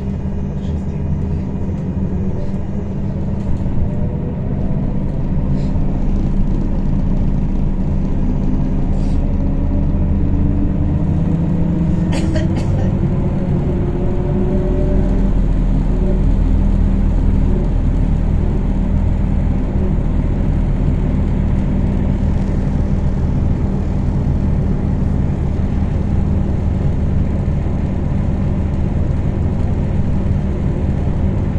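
Inside a moving MAZ-103T trolleybus: a steady low hum and rumble of the running trolleybus, with a whine from the electric drive that rises in pitch over the first dozen seconds as it picks up speed. A few short clicks come about twelve seconds in.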